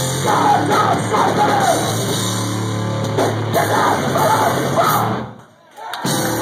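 Hardcore punk band playing live and loud, the singer yelling over the band. The sound drops away sharply for about half a second near the end, then comes back.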